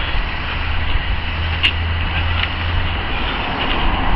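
Steady outdoor background noise with a low rumble, swelling through the middle, and a couple of faint clicks.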